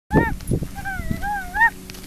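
A toddler's high-pitched, wordless vocalizing: a short call, then a longer wavering sing-song note that rises just before it stops. A few soft thuds sound underneath.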